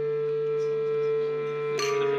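Background music score: one long held note over a low sustained drone, moving to a new note with a brief bright accent near the end.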